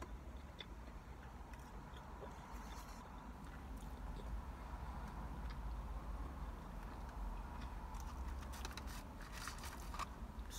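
Close-up chewing of a burger with the mouth closed, small wet clicks and rustles that come thicker near the end, over a steady low hum.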